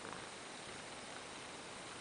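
A black European shorthair cat purring faintly under a blanket, against a steady hiss.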